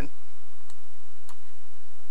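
Two computer mouse clicks, a little over half a second apart, as a scrollbar is clicked and dragged, over a steady low hum.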